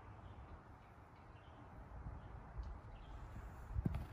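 Quiet outdoor background with a low rumble, and a single sharp tap shortly before the end.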